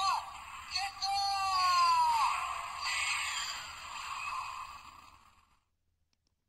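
Electronic sound effect from a Sevenger toy figure's built-in speaker. It is thin and tinny, with gliding pitched tones and one long falling glide ending about two seconds in, then a hiss that fades away. It cuts to silence near the end.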